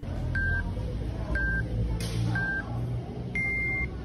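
Apple Watch workout countdown: three short beeps about a second apart, then a longer, higher beep as the walking workout starts. A steady low background rumble runs underneath.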